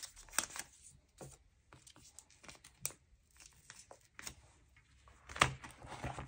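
Photocards being handled and slid into clear plastic binder sleeve pockets: soft, scattered crinkling and clicking of the plastic pages. A louder rustle comes about five seconds in as a binder page is turned.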